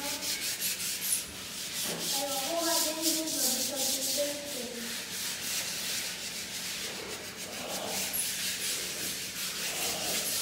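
Rapid back-and-forth rubbing strokes on a hard surface: a hiss that pulses several times a second.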